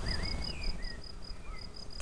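A cricket chirping in a fast, even pulse of short high-pitched notes, about seven a second, pausing briefly about halfway through. A few faint bird chirps sound over it.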